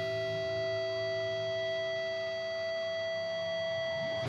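A held electric guitar chord ringing on steadily through the PA in a pause of a live rock song, several high tones holding while the low notes fade near the end.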